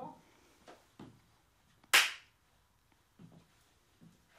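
A single sharp clap about two seconds in, with a short ring of the room after it: a sync mark for a recording that has just started rolling.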